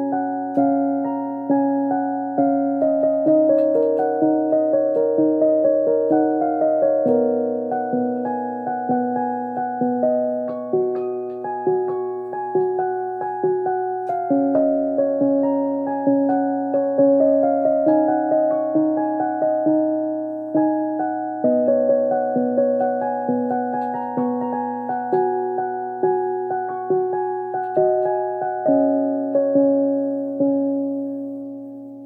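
Portable electronic keyboard played with a piano voice: a continuous flowing pattern of struck notes and held chords in the middle range, each note fading after it is struck, with new notes about every half second to a second.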